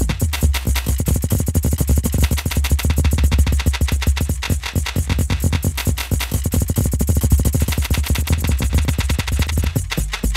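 Granular synth patch in Logic Pro's Alchemy playing a held note built from a drum beat loop: a dense stream of rapid, stuttering grains over a heavy low bass. A slowed, unsynced LFO is sweeping the grain size, so the texture shifts as it plays.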